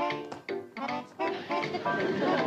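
Background music of short notes played in quick succession.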